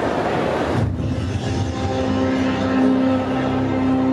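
Music with long held low notes comes in about a second in, after a short break in a general noise of the hall's crowd.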